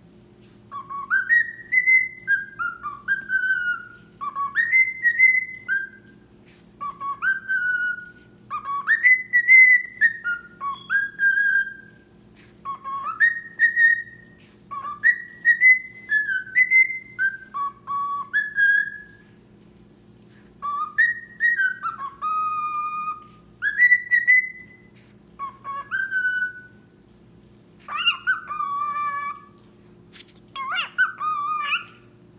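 Male cockatiel whistling a song he is making up: short phrases of rising and falling whistled notes, each a couple of seconds long, repeated with brief pauses between. Near the end the whistles turn rougher and more chirpy.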